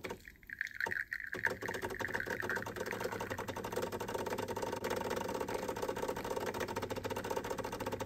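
Decent espresso machine's pump buzzing as it pushes water through the coffee puck during a turbo bloom espresso shot, with brief dips in the first second and a half and a higher whine that fades out a couple of seconds in. The buzz cuts off suddenly at the end.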